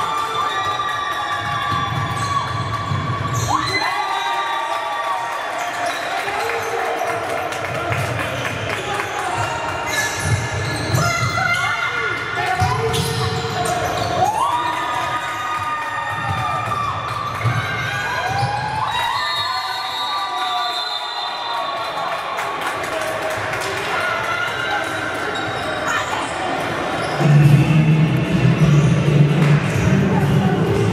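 Basketball game on a hardwood court in a large, echoing hall: the ball bouncing, repeated high squeaks from sneakers, players calling out and brief cheering. Music starts loudly near the end when play stops.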